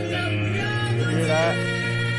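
A slow ballad playing: a woman singing over piano, with a steady low bass underneath.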